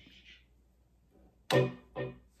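Electric guitar struck about a second and a half in, the notes ringing and fading, then struck again near the end.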